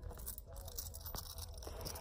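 Faint handling noise of a small monogram-canvas key holder being turned over in the hands: soft rustling with a few light clicks.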